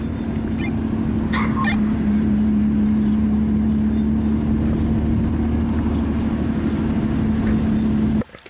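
Car engine and exhaust droning at one steady pitch while cruising at constant speed, heard from inside the cabin.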